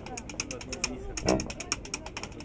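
Washboard scraped in a fast, even clicking rhythm, with a short pitched call about one and a third seconds in.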